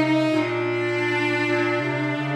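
A cello and a bass clarinet playing together in a slow, legato duo arrangement of a jazz ballad. They hold long notes, and the low line moves to a new note about half a second in and again near the end.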